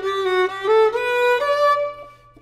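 Solo violin playing a short bowed phrase of single notes that step through several pitches, ending on a higher held note that fades away near the end.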